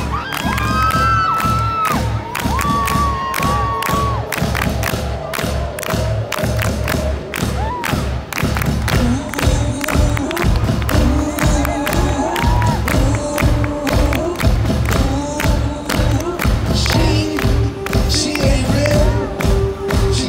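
Crowd cheering and screaming as a live rock band starts a song with a steady, heavy low drum beat. Singing comes in about halfway through.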